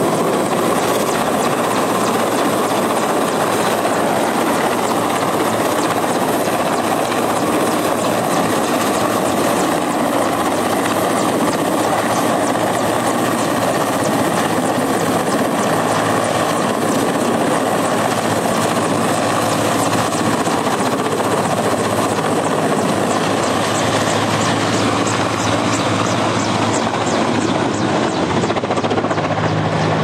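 Mil Mi-8-family transport helicopter hovering low, its rotors and turbines running loud and steady as its slung water bucket dips into a pond to fill.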